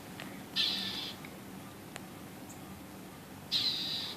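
Northern mockingbird giving two short, harsh scolding calls about three seconds apart, each lasting about half a second: the alarm calls it uses when mobbing a cat.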